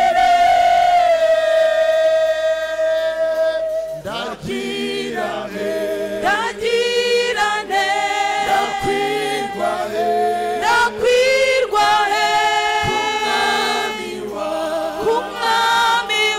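Mixed church choir of men and women singing a gospel hymn. The voices hold one long note that sinks slightly over the first few seconds, then move on through shorter notes.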